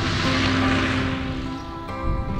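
A propeller aircraft's engine swells up and fades away again over about a second and a half, heard over background music with sustained notes.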